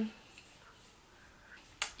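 Quiet room tone, then a single sharp click near the end.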